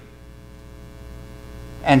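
Steady electrical mains hum, a low hum with a faint buzz of evenly spaced overtones, in a pause in speech; a man's voice comes back near the end.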